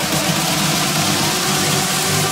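Big room house music in a breakdown: the beat drops out, leaving sustained synth tones over a steady wash of noise.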